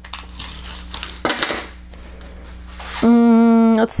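Fingers rubbing and pressing a puffy sticker down onto a paper card: soft rustling and scraping with a few small clicks. About three seconds in, a long held vocal sound, louder than the handling.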